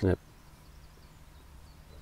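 A brief spoken word, then faint, steady outdoor background hiss with no distinct sounds.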